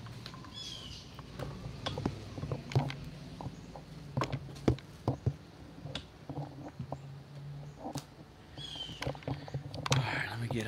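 Scattered clicks and knocks from a handheld phone being swung about and parts being handled, over a steady low hum. A short squeak sounds about half a second in and again near the end.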